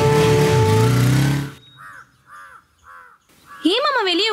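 Background film music that cuts off about a second and a half in, followed by a crow cawing three times in even succession.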